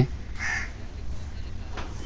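A single faint, short bird call about half a second in, over a low steady hum.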